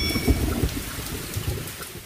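The tail of a radio station's intro sound effect: a rumbling, hissing noise that fades away over about two seconds. A few high ringing tones die out just after it begins.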